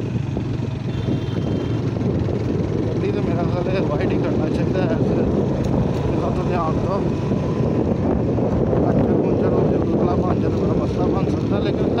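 Suzuki 150cc single-cylinder four-stroke motorcycle engine running steadily under way, heard from the rider's seat along with road noise.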